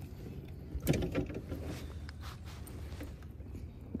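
Faint rustling and handling noise of camouflage clothing rubbing against the camera's microphone, over a low rumble, with a short knock about a second in.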